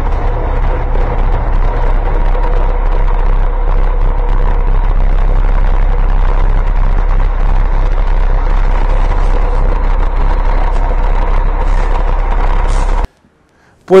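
Buses running at a bus-terminal platform: a loud, steady engine rumble with a steady hum over it, cutting off suddenly about a second before the end.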